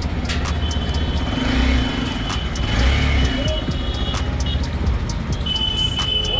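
Motorcycle engine running at low revs, with a steady high tone sounding over it for a few seconds.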